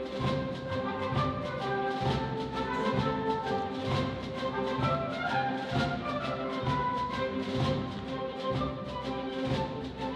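Theatre orchestra playing dance music, with a melody over a steady low drum beat.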